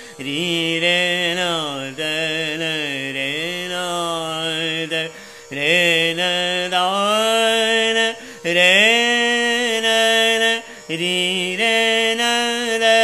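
Male dhrupad vocalist singing the alap of raga Bageshri: slow, unmetered phrases of long held notes joined by gliding slides, over a tanpura drone. The voice breaks off briefly for breath about five, eight and eleven seconds in.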